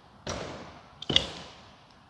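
A man coughing twice, about a second apart, the second cough louder.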